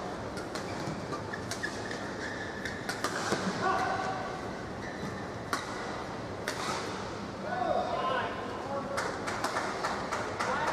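Badminton rally: sharp racket-on-shuttlecock hits at irregular intervals over a steady murmur of voices.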